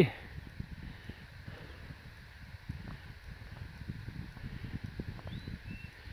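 Outdoor ambience of wind rumbling unevenly on the phone's microphone, with two faint short bird chirps near the end.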